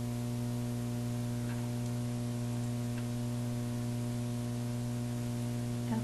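Steady electrical mains hum: a low, even buzz with a stack of overtones that does not change.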